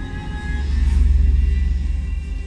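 Show soundtrack: music with a deep low rumble that swells up about half a second in, under the animation of the solar wind striking Earth.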